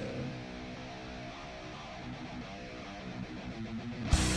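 Live rock music in a quieter passage, where an electric guitar plays sustained notes with the rest of the band held back; the full band comes back in loud right at the end.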